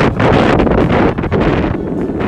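Wind buffeting a phone microphone, a loud, gusty rumble with hiss that eases a little near the end.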